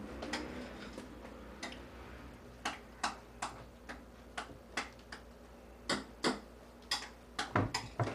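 Knife striking a wooden cutting board in single, irregular chops while vegetables are sliced, about two cuts a second, the loudest few near the end.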